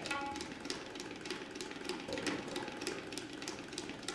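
Tabla played in a fast passage of rapid strokes. The right-hand drum rings on the strokes near the start, then a run of quick, dry strokes follows with little bass.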